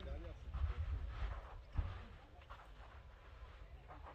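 Wind noise rumbling on the microphone, heaviest in the first half, under faint distant voices of people talking; a single sharp knock just under two seconds in.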